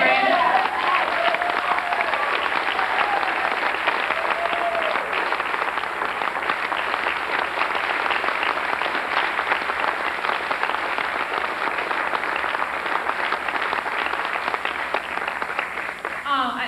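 Audience applauding steadily, with a voice or two audible over the clapping in the first few seconds.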